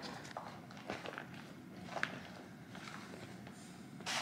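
Faint, scattered light taps and clicks of a kitchen knife on a plastic cutting board as cherry tomatoes are sliced. The sharpest tick comes about two seconds in.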